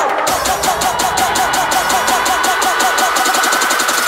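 Electronic dance track playing through a DJ mix in a build-up section: quick percussion strikes that speed up toward the end, repeated falling synth notes about four a second, and a held high tone, with no kick drum.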